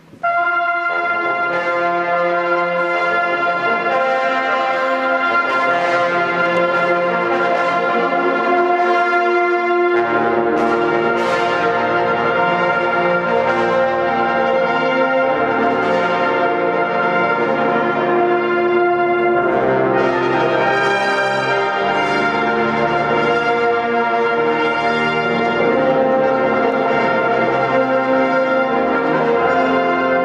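Brass ensemble of trumpets and tuba playing, all starting together with a sudden entry. A deeper bass line fills in about ten seconds in.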